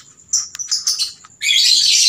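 Lovebirds chirping in short bursts, then a louder, continuous run of rapid high chirping that starts about a second and a half in.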